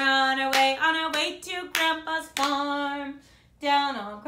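A woman singing a children's song unaccompanied while clapping her hands in time, the claps falling steadily a little over half a second apart. The singing and clapping break off briefly near the end before the singing starts again.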